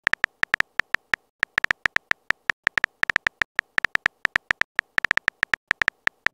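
Simulated phone-keyboard typing clicks from a texting-story app, one short click per letter as a message is typed. They come in quick uneven runs of about six a second, with a couple of brief pauses.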